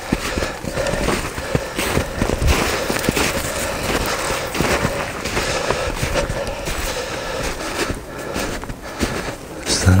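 A person walking through snow and brushy undergrowth: irregular crunching and crackling footsteps, with twigs and dry grass brushing against clothing.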